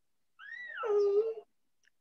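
A single high, drawn-out animal-like call, about a second long, that rises slightly and then slides down steeply in pitch.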